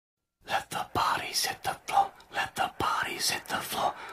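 Hushed voices whispering in quick, breathy bursts, starting about half a second in, broken by a few sharp knocks or clicks.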